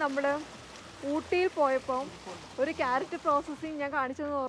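A woman speaking in short phrases over the steady wash of running water from a small stream and waterfall.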